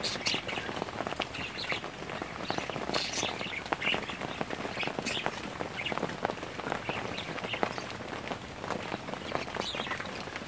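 Steady rain falling, with many separate drops hitting close by as sharp ticks.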